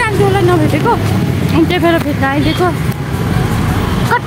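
A young woman talking, over a low steady rumble in the background.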